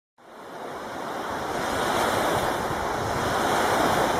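Waves washing on a beach: a steady rush of surf that fades in from silence over the first two seconds.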